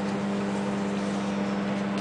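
Daewoo 700-watt microwave oven running: a steady electrical hum with an even whir, unchanging throughout.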